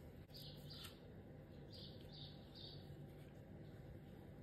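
Faint bird chirping: five short, high chirps in the first three seconds over a low, steady hum.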